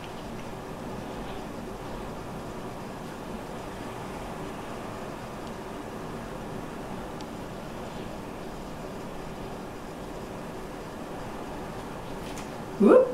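Steady background noise of a room with an open window, a constant even hiss and low rumble with no distinct events; pouring paint makes no clear sound.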